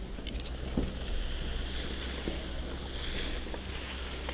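Wind rumbling on the microphone of a skier's helmet or body camera while skiing downhill, with the hiss of skis sliding over packed snow and a few short clicks in the first second.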